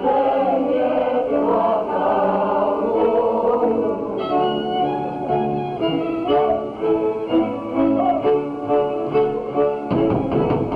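Polish highlander folk music from the stage: a group of voices singing a folk song, then from about four seconds in a band takes over with a steady dance rhythm.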